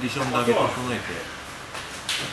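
Speech only: a voice saying a few words, with a short pause near the end.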